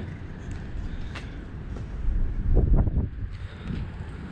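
Low rumble of wind on the microphone outdoors, with faint handling clicks and a louder low swell a little past halfway, as a cup of drained coolant is carried and set down.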